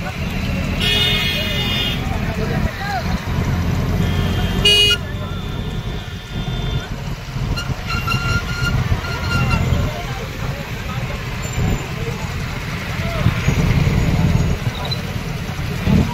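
Motorcycle engines and road rumble from riding in a dense pack of motorbikes. Horns honk over it: a long blast about a second in, a short one near five seconds, and fainter toots later.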